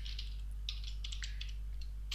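A few quick computer keyboard key presses, bunched near the middle, deleting a selected word of code, over a steady low hum.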